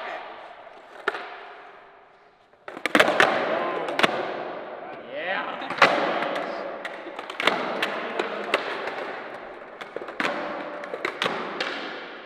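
Skateboards popping and landing on a concrete floor: a string of sharp, irregular clacks of decks and wheels slapping down as several skaters try a freestyle popcorn trick, each clack echoing in a large hall.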